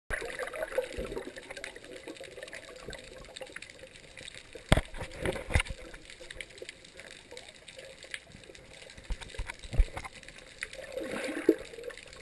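Underwater sound through an action camera's housing: water moving against the case, with scattered sharp clicks and knocks and a swell of gurgling bubbles near the end.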